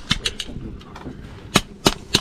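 Wood fire crackling in a clay stove: irregular sharp snaps, a few light ones at first and two loud cracks a little past the middle.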